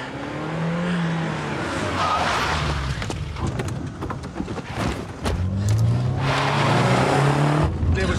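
A car engine revving hard as the car accelerates away, its pitch rising twice, with a hiss of tyres on the road. A few short knocks come in the middle.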